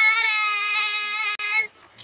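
A girl's voice holding one long, high, drawn-out note for about a second and a half, then stopping.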